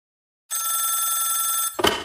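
Telephone ringing once, starting about half a second in as a steady electronic ring lasting just over a second, then cut off by a sharp click as the call is answered.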